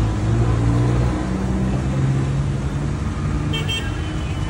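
A car engine running at low speed close by, its pitch shifting slightly, with a short high-pitched horn toot near the end.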